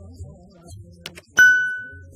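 A single bright bell-like ding, struck about a second and a half in and ringing out for about half a second, after a quick pair of soft clicks. These are the mouse-click and notification-bell sound effects of a subscribe-button animation.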